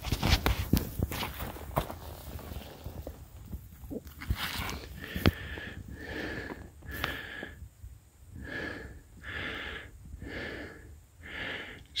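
Rustling and crunching of dry leaves, pine needles and crusted snow with several sharp clicks as a deer shed antler is picked up off the ground. Then heavy, even breathing, about one breath a second, each with a faint whistle.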